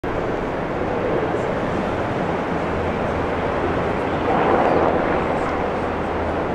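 Steady rumble of city traffic and engines, swelling briefly about four seconds in.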